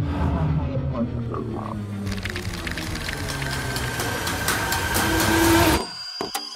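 Trailer score and sound design: a low drone that swells, about two seconds in, into a dense, rising crescendo with rapid ticking clicks, growing louder until it cuts off abruptly just before the end.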